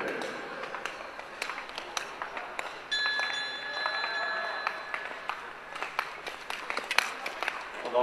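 Scattered claps and sharp knocks echoing in a large indoor speed-skating arena. A steady high-pitched tone starts about three seconds in and lasts almost two seconds.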